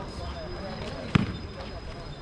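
A basketball bouncing once on a hard outdoor court, a single sharp, loud bounce about a second in.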